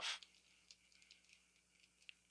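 Near silence with a few faint, scattered clicks of a plastic action figure being handled as its leg joint is bent.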